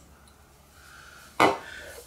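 Quiet room tone, then a short exclaimed "oh" from a man about a second and a half in.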